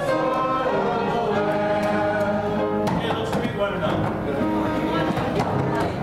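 Congregation singing the close of a hymn verse with instrumental accompaniment; the held singing ends about three seconds in and gives way to many people talking at once as music continues.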